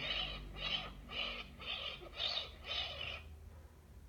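Striped skunk call played back from a sound recording: six short calls, about two a second, each rising and falling in pitch, stopping a little after three seconds in.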